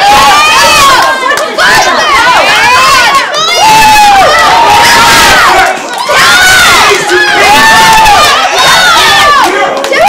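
Many young voices shouting and yelling together in overlapping battle cries during a staged sword fight, loud throughout with brief dips about one and a half and six seconds in.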